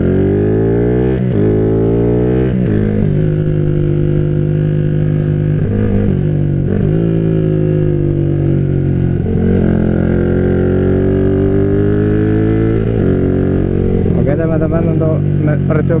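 Yamaha Jupiter MX motorcycle's single-cylinder four-stroke engine, bored up to 177 cc with a 62 mm piston, pulling away under throttle. Its note rises twice in the first few seconds and drops at each gear change, then holds steadier with a few brief dips as the throttle is eased and reopened.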